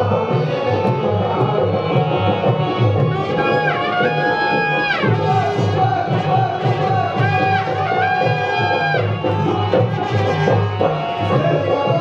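Live Indian folk music accompanying a dance: hand drums keep a steady, dense rhythm throughout, with a melody of long held notes that slide in pitch, about four seconds in and again about eight seconds in.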